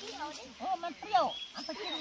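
Quiet talking voices in short syllables, with faint high chirps in the second half.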